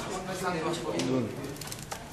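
People's voices talking quietly in a crowded room, with a few short clicks in the second half.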